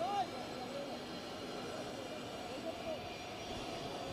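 Ambience of a near-empty open-air cricket stadium: a steady background hum with a few faint, distant calls, and a brief louder sound right at the start.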